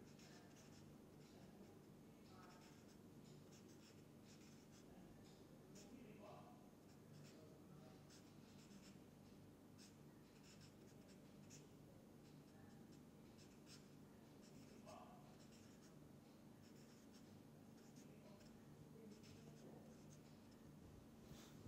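Faint felt-tip marker writing on paper: many short, irregular scratchy strokes over a steady low hum.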